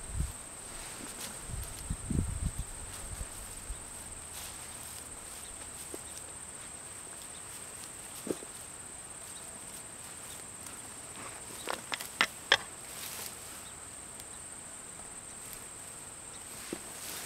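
Hands digging through soil and dry grass mulch: soft rustles and scrapes, with a cluster of sharp crackles about twelve seconds in. Underneath is a steady high-pitched insect drone.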